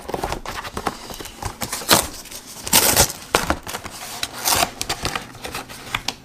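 A frozen pizza's cardboard box being torn open along its perforated tear strip by hand, a run of crackling tears and cardboard rustle with louder rips about two, three and four and a half seconds in.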